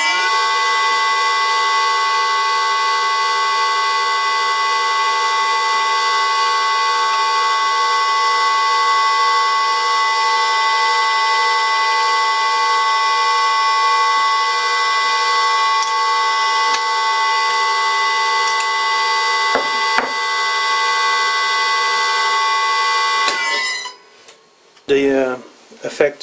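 A VFD-driven electric motor running a lathe through a V-belt, with a steady, loud whine of several tones. A couple of faint knocks come about twenty seconds in. The whine then falls in pitch as the motor winds down, and it stops a couple of seconds before the end.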